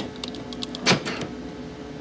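Power door lock switch being pressed: a few light clicks, then a sharper clack about a second in, over a faint steady hum.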